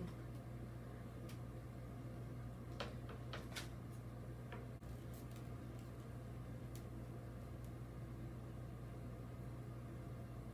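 Quiet room tone: a steady low hum, with a few faint rustles and clicks as a ribbon is handled and tied, clustered about three seconds in.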